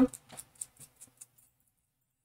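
Foam spouncer dabbing thick etching cream through a stencil onto a glass dish: five or six faint, soft dabs that stop about halfway through.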